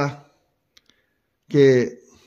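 A man speaking Urdu trails off, pauses with a couple of faint short clicks, then starts again with one word.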